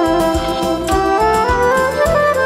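Macedonian folk wedding dance tune (an oro): a melody line climbing in steps over a steady beat in the bass.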